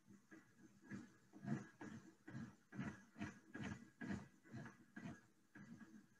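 Faint clicking at a computer: about a dozen short, irregular clicks, roughly two a second, as a case list is scrolled through.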